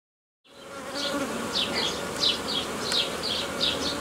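Honeybees humming steadily over an open hive full of bees, fading in about half a second in. Short high chirps repeat about twice a second above the hum.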